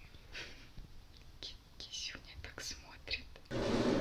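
Madagascar hissing cockroach hissing in about five short, breathy bursts.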